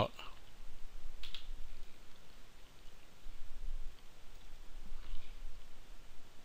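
Faint computer mouse clicks, one about a second in and another near the five-second mark, over a low steady hum.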